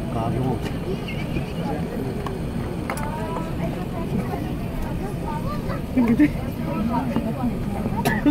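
Cabin noise of an Airbus A380 rolling out on the runway after landing: a steady low rumble of engines and wheels, with passengers talking over it, louder about six seconds in.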